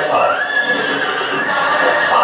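A horse whinnying once, a long call that rises and then falls, from a film soundtrack played back over loudspeakers in a hall.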